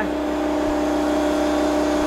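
Pressure washer running with a steady, even hum while the house wall is jet washed.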